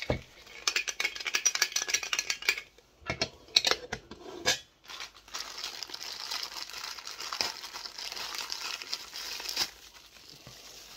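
Plastic wrapping crinkling and rustling in the hands as a Funko Soda figure is unwrapped from a black plastic wrap and bubble wrap. There are quick clicks in the first few seconds and a few louder rustles around the middle, then steady crackling.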